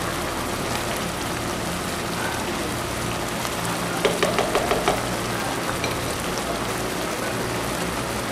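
Pot of basmati rice boiling hard on a high flame as its last water cooks off, a steady crackling hiss of bubbles bursting through the grains. A slotted spoon scrapes through the rice a few times about four seconds in.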